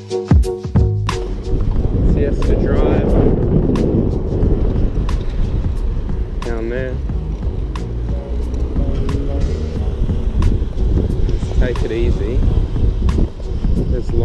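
Wind buffeting the microphone of a camera on a moving road bike: a dense, steady low rumble with sharp clicks now and then. Background music ends about a second in.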